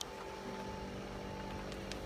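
A steady low mechanical hum of a running motor, with a couple of faint clicks near the end.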